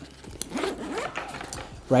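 A zipper on a nylon backpack pocket being pulled open: a quiet rasping run of small rapid clicks starting about half a second in and lasting a little over a second.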